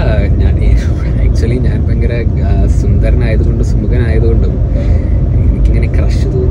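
A man talking inside a moving car, over the car's steady low rumble from the road heard in the cabin.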